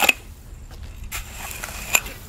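Metal landscape rake dragging and scraping joint sand across a concrete slab, spreading the sand out thin to dry. Two sharp scrapes or clacks of the rake head on the concrete, at the start and near the end, with softer strokes between.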